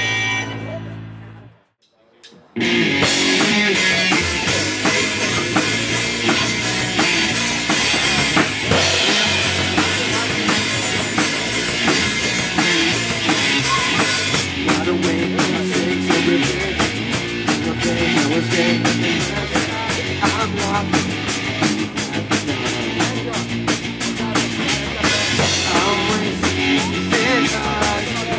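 Live rock band with electric guitars and a drum kit playing. The sound drops out briefly about two seconds in, then the full band comes back in loud. From about halfway through the drums keep a fast, even beat.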